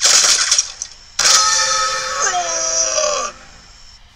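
Cartoon sound effects: a quick burst of rifle fire with sharp metallic pings as the bullets bounce off, lasting under a second. About a second later a longer loud sound plays for about two seconds, its lower tones sliding down in pitch before it cuts off.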